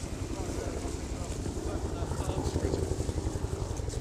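A steady, low mechanical rumble with a fast flutter in it, under indistinct background voices.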